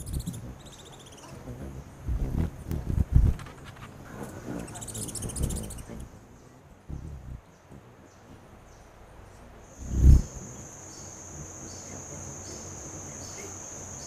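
Forest insects calling: brief high buzzy trills in the first half, then a steady high-pitched cricket-like trill that sets in about ten seconds in. A few low thumps come around two to three seconds in, with the loudest just before the trill begins.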